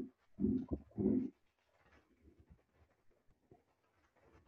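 Pigeon cooing in a run of short, low notes about half a second apart that stops a little over a second in, followed by faint computer-keyboard typing.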